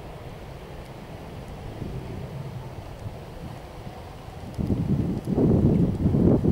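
Wind rumbling on the microphone, low and steady at first, then turning loud and gusty about four and a half seconds in.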